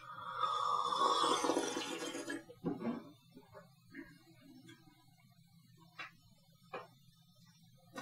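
A person sips tea from a small cup, drawing it in with air in a slurp about two seconds long. A few faint light clicks follow near the end.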